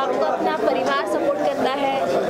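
Chatter: several people talking over one another, with no one voice clear.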